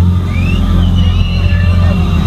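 Live rock band's amplified electric guitars and bass holding a loud, steady low droning note, distorted by an overloaded camera microphone, with a few short high whistling glides above it.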